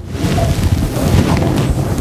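Loud rustling rumble from something rubbing against a clip-on lapel microphone.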